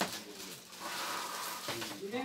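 Clear plastic wrapping rustling and crinkling as an LED ring light is pulled out of its bag, with a sharp click at the start.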